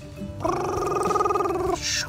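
A man's voice making a steady, buzzing engine noise for a toy backhoe, held on one pitch for about a second and a half, over background music.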